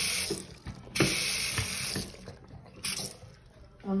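Water running from a two-handle bathroom faucet into a sink. It comes in loud spells: strong at the start, easing, strong again from about one second in until about two seconds in, and then a brief spurt near the end.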